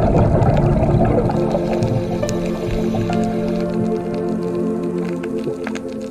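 Slow ambient music of sustained, held tones, with a wash of water sound laid over it that is loudest at the start and fades over the first couple of seconds, dotted with scattered small clicks.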